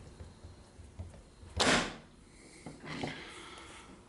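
Antique magneto turned over by hand: one short snapping hiss about one and a half seconds in as it fires a spark across a wide test gap, then a faint click near three seconds. The magneto is throwing a good spark.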